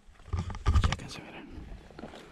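A cluster of knocks and rubbing from the rifle-mounted camera being handled as the rifle is moved, loudest in the first second, then a softer steady rustle.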